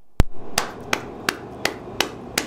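A man clapping his hands in a steady rhythm, six claps at about three a second, the first the loudest.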